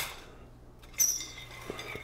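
Fries sliding off a perforated stainless steel air-fryer rack onto a plate, with a sudden light metallic clink and rattle about a second in that fades out, and a small click near the end.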